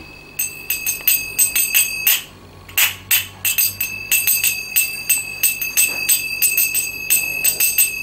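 Zills (brass finger cymbals) on the thumbs and middle fingers of both hands, clashed together in a rapid rhythmic pattern, each stroke leaving a high, ringing bell-like tone. There is a short pause a little over two seconds in, then the pattern resumes.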